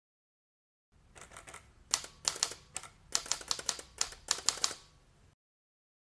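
Typing clicks like typewriter keys, struck in quick irregular runs: a few soft strokes at first, then louder strikes, stopping abruptly about five seconds in.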